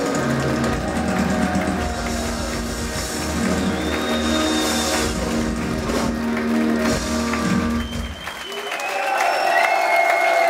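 Metal band playing live, holding a final loud chord with drums and guitars until the bass cuts off about eight seconds in. The crowd then cheers and applauds.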